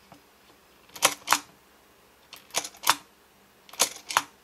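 Sharp plastic clicks from a pull-apart Olaf snowman toy as its head is pushed down to switch its facial expression. The clicks come in three groups of two or three, about a second apart.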